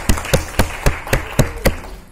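A small audience applauding, with one person's hand claps close by standing out, about four sharp claps a second, until the applause stops near the end.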